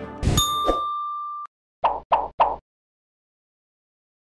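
Background music ends, and a logo sting follows: a hit with a bright ding that rings for about a second, then three quick short pulses.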